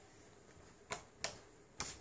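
Three sharp clicks in the second half as the lights are switched back on, otherwise near quiet.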